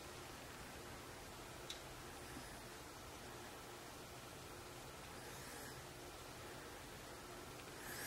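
Faint, steady hiss of an LP gas fireplace burner running, heard through its glass front, with one small tick just under two seconds in.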